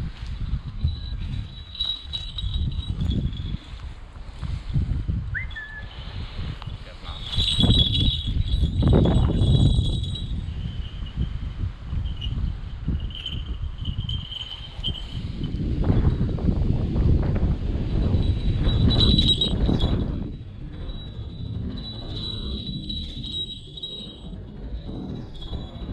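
A falconry hawk's leg bells tinkling high and thin, on and off. Under them is low gusty rumbling of wind on the microphone, loudest twice, about eight to ten and sixteen to twenty seconds in.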